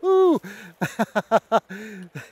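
A man's excited exclamation, then a run of short bursts of laughter.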